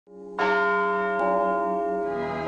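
A bell is struck about half a second in, with a lighter second strike just after a second; its many tones ring on steadily.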